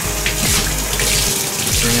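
Tap water running steadily from a sink faucet and splashing over a plastic protein skimmer cup lid held under the stream while it is rinsed by hand.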